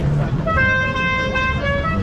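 A vehicle horn sounding a run of held notes at changing pitches, like a musical multi-tone horn playing a tune, starting about half a second in. It sounds over a low rumble of traffic and voices.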